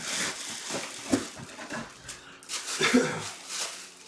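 Plastic bag and cardboard box rustling as a football helmet is lifted out of its packaging, with a couple of short vocal sounds about a second in and near three seconds in.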